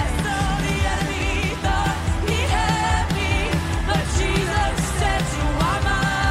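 Live worship music: women singing a gliding, ornamented melody into microphones over a full band with keyboard.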